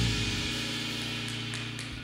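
A backing band's final chord ringing out and fading, with a cymbal dying away beneath it.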